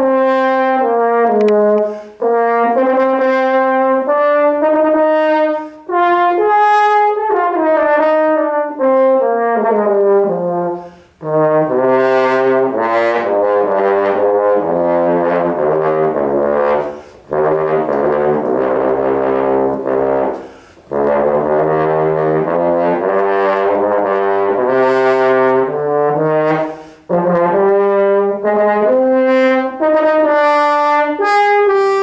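French horn playing loud phrases of stepping notes, broken by short breaks every few seconds. In two long stretches in the middle it drops into a low register with a fuller, denser tone.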